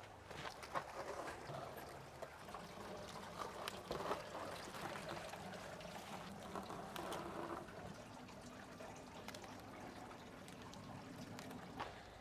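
Faint trickle of water in an NFT hydroponic system as cos lettuce heads are lifted out of the channels, with light scattered clicks and rustles of the plants and their roots being handled.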